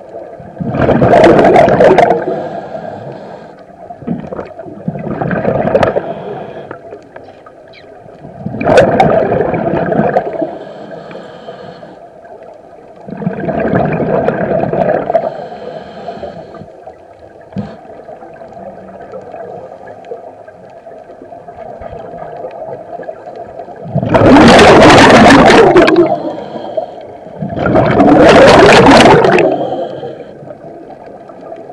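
Scuba regulator exhalations heard underwater: a gurgling rush of exhaled bubbles about every four seconds, six in all, the last two the loudest. A steady faint hum runs underneath.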